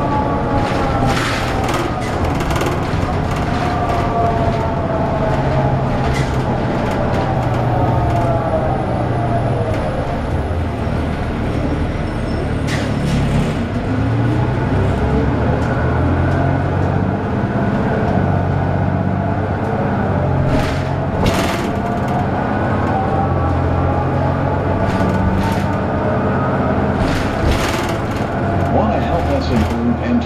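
Cummins ISL diesel engine and Allison B400R automatic transmission of a 2002 Neoplan AN440LF transit bus, heard from inside the cabin. A steady low engine drone runs under a drivetrain whine that falls over the first ten seconds as the bus slows, then rises again from the middle on as it speeds up. A few sharp rattles or knocks come near the middle.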